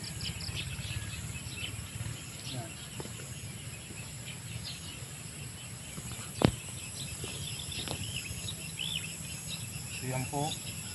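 Open-field ambience: birds chirping in short calls and insects trilling steadily, over a low steady rumble. One sharp click, about six and a half seconds in, is the loudest sound.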